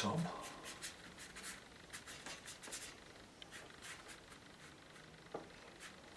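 A watercolour brush stroking across wet paper: faint, irregular brushing strokes as a sky wash is laid in.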